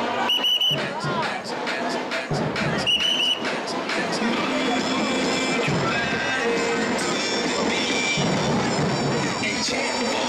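Carnival parade music playing over crowd voices and chatter. Two short, shrill whistle blasts come near the start and again about three seconds in.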